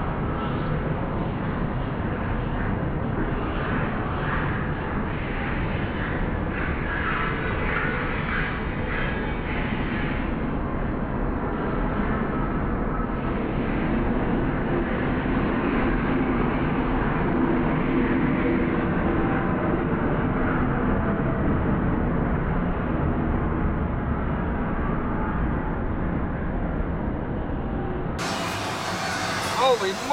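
CSX freight diesel locomotives passing close under power: a steady, loud engine and rolling-train noise. One unit is throwing flame and smoke from its turbocharger stack.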